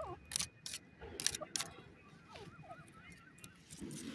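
Grey francolin giving soft calls at close range: short falling squeaks, then a run of small wavering notes at about four a second in the second half. A few sharp clicks come in the first half.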